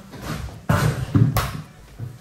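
Handling knocks as a wall-hung boiler is lifted out of its box and carried: one knock about two-thirds of a second in, then two more close together just after a second.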